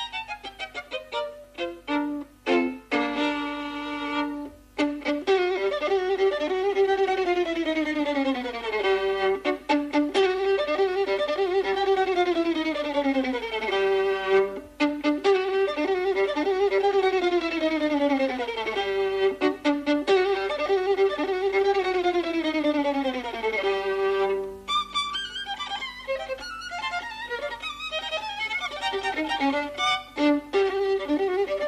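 Solo violin playing a fast virtuoso passage: repeated phrases sweep downward in pitch, each over a second or two. The passage turns busier and more broken near the end.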